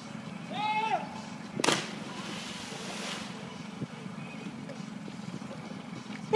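A short shout under a second in, then the splash of a person jumping feet-first from a bridge into the river about a second and a half in: a sharp smack on the water followed by about a second and a half of spray hiss. A steady low motor hum runs underneath.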